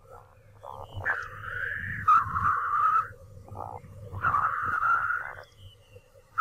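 Repeated animal calls: three drawn-out calls of about a second each, with short rapid pulsed notes between them, over a low steady hum.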